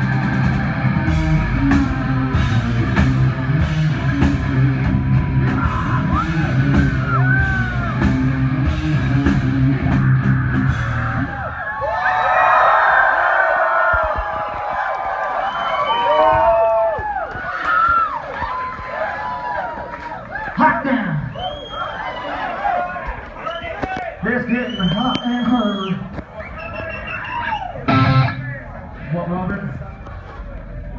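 Rock band playing live with distorted guitars, bass and drums, the song ending abruptly about eleven seconds in. A club crowd then cheers and screams, with many short rising and falling yells.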